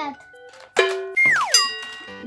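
Background music with a cartoon-style sound effect about a second in: a sudden tone that slides steeply down in pitch, followed by ringing chime-like notes.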